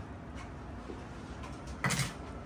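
Steady room background noise in a small hotel room, with a couple of faint ticks and a short, louder sound just before the end.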